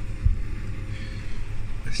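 Beko front-loading washing machine running at the end of its wash, the drum turning slowly with a low steady hum, and a thump about a quarter second in.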